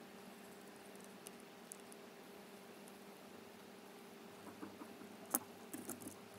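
Small scissors snipping thin card, faint clicks and scratches of the blades and paper, with a cluster of clicks and one sharper click about five seconds in.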